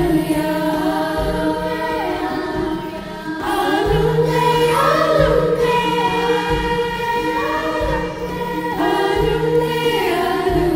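Middle school girls' chorus singing a slow Swahili lullaby in several voices, over low sustained accompaniment notes that change every second or so. The singing eases briefly about three seconds in, then swells again.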